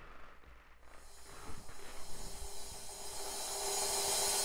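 Faint hiss that swells steadily, with a low steady tone joining about a second and a half in: the opening fade-in of a music video's soundtrack playing back.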